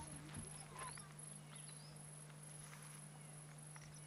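Near silence: faint outdoor ambience over a steady low hum, with a few faint short chirps.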